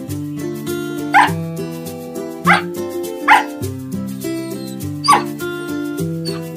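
A dog barks four short times, each bark dropping in pitch, over light guitar-backed music.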